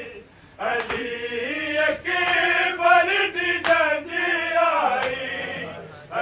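Male voices chanting a Punjabi noha, a Shia mourning lament. After a short break near the start, the chanting picks up again about half a second in and carries on in long held, wavering lines.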